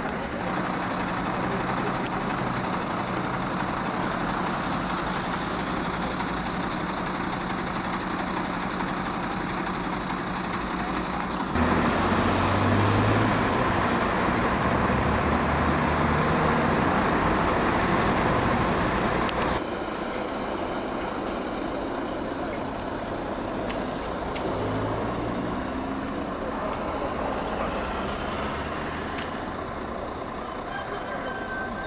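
Road traffic noise on a main road, with vehicle engines running. For several seconds in the middle a heavy vehicle's engine runs louder, and that louder stretch starts and stops abruptly.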